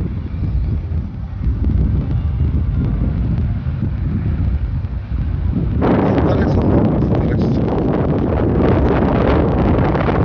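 Wind buffeting a handheld phone's microphone, a low rumble that becomes louder and fuller about six seconds in.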